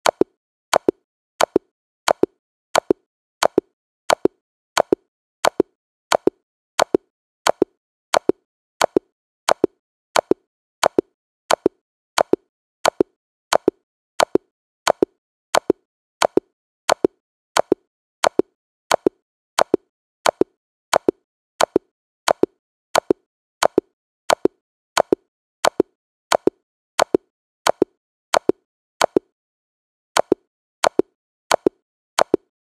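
A chess checkmate sound effect looped back to back: a short, sharp double click repeating evenly about every 0.7 seconds, some forty times over.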